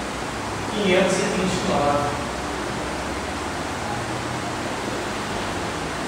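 Steady, even hiss of background room noise with a faint low hum, after a man briefly says a number near the start.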